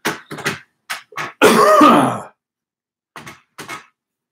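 A man coughing in a short fit: a few quick coughs, then one longer, louder cough about one and a half seconds in. Two short, quieter sounds follow near the end.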